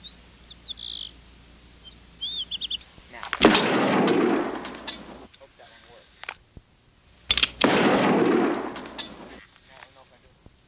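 Two gunshots about four seconds apart, each a sharp crack followed by a long, fading noisy tail. Birds chirp faintly before the first shot.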